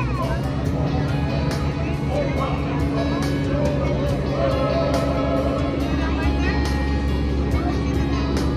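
Music with a steady beat and held low notes, with indistinct voices over it.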